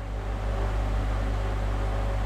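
Steady low background hum with an even hiss, unchanging through a pause in speech, like a fan or air conditioner running in a small room.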